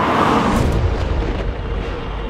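A rushing whoosh that peaks just after the start and sweeps down in pitch into a deep low boom that rumbles on.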